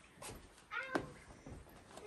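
A single short, high-pitched voice-like call a little under a second in, rising then falling like a meow, most likely a person calling out in the cave, with a few faint steps or clicks on the gravel floor.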